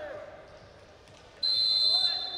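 Referee's whistle blown in one sharp, steady, high-pitched blast starting about one and a half seconds in, stopping the action as a point is given.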